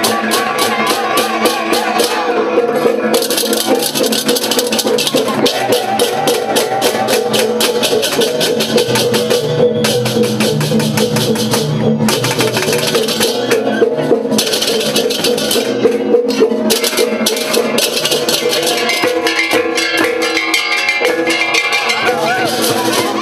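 Balinese processional gamelan (beleganjur) playing loudly: fast, dense clashing of hand cymbals over drums and ringing gong tones.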